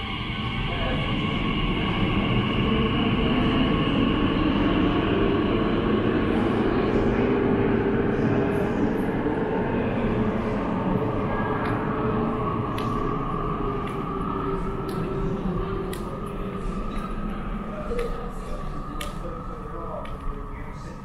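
An Elizabeth line Class 345 train pulling out of an underground platform: a rumble with the whine of its traction motors builds, is loudest for several seconds, then eases as the train draws away into the tunnel.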